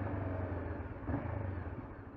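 Honda CBR500R's parallel-twin engine running with road and wind noise, a quiet steady low hum that fades gradually as the bike slows.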